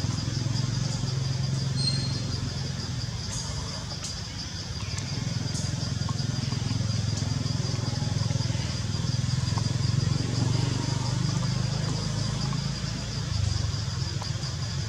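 A low, steady engine rumble runs throughout, with a thin, high, rapidly pulsing insect buzz over it.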